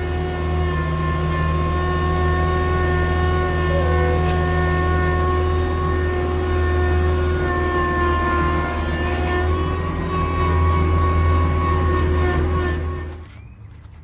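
Kubota B3350 compact tractor's diesel engine running steadily as the tractor is driven, with a low, even hum; the sound cuts out near the end.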